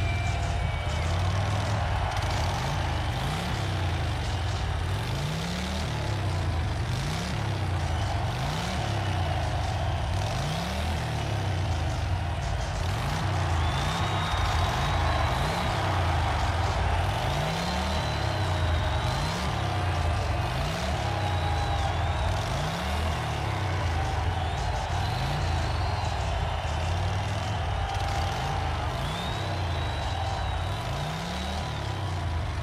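Motorcycle engine on a concert stage, revved again and again about once a second over a steady idle.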